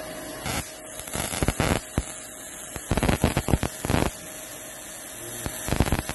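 Small 12-volt Tesla coil running with a steady hum while its sparks jump from a pin on the spherical top load to a hand, crackling in about four bursts.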